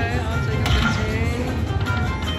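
Dragon Link Panda Magic slot machine's electronic bonus music and chiming, gliding sound effects as the reels spin in the hold-and-spin feature, over a steady low casino hum.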